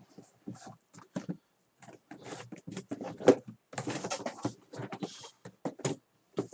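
Cardboard trading-card boxes being handled and set out by hand: irregular taps and knocks, with brief sliding scrapes of box against box.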